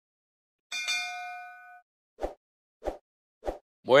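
Subscribe-button animation sound effects: a bright bell-like ding that rings for about a second, followed by three short clicks roughly two-thirds of a second apart.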